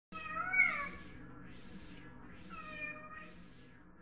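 A cat meowing twice, the first call about half a second in and a second, softer one near three seconds, over a faint steady hum.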